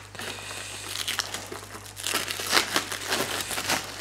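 Plastic packaging wrap being peeled off and crinkled by hand, an irregular run of crackles that is loudest about halfway through.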